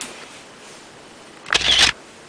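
A short, loud burst of rustling handling noise on the camera's microphone about a second and a half in, over a low background hiss.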